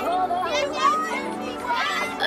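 A group of young girls shouting and cheering together, many high voices overlapping.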